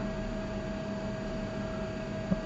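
Steady hiss with a faint, even electrical hum: room tone between words.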